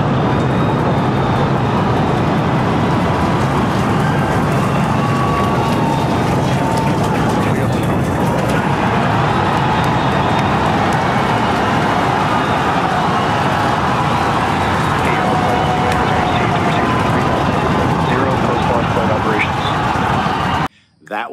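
SpaceX Starship rocket lifting off, the Super Heavy booster's Raptor engines firing as a loud, continuous, unbroken noise.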